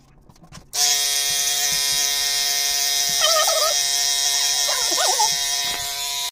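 Electric hair clippers switched on about a second in and running with a steady buzzing hum.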